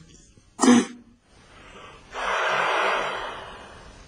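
Breath blown hard into a bass tuba with no note sounding. A short puff comes about half a second in, then about a second and a half of breathy rushing air that fades: the player is failing to get a tone.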